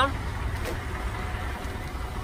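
Steady low outdoor background rumble with a faint hiss, with no distinct event.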